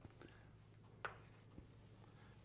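Near silence with faint writing sounds: a few light taps and scrapes of a lecturer writing or drawing on a board, about a second apart.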